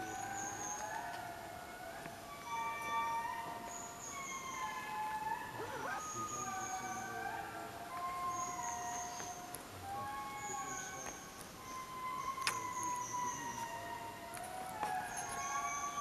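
Indri lemurs singing in chorus: several voices overlapping in long held notes that glide slowly up and down in pitch, a sound between a monkey howl and whale song. A single sharp click sounds about twelve seconds in.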